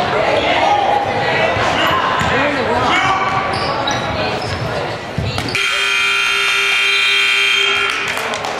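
Players' voices echoing in a gymnasium, with a ball in play, then about five and a half seconds in a gym scoreboard buzzer sounds, one steady electric tone held for about two and a half seconds and marking the end of the game.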